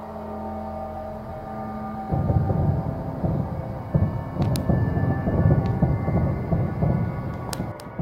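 A loud, deep rumbling crackle in the night sky, like thousands of fireworks going off at once, starting suddenly about two seconds in with a few sharp cracks after it. Its cause is unexplained: no fireworks were planned. A low music drone plays under it.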